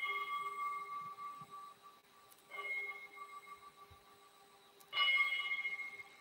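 Altar bell rung at the elevation of the chalice after the consecration. It is struck three times about two and a half seconds apart, and each stroke rings and fades before the next.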